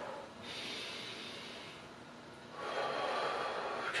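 A man's deep, deliberate breathing, paced with arm circles: a long breath in, then a louder breath out starting about two and a half seconds in.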